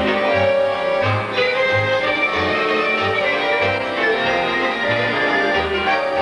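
Romanian folk ensemble playing, violins carrying the melody over a steady bass beat.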